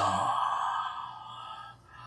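A man's long breathy exhale, a sigh that fades away over about a second and a half, over a low steady hum.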